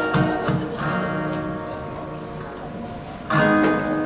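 Acoustic guitar played solo: a few quick strums, then a chord left ringing and slowly fading, and a loud new strum about three seconds in.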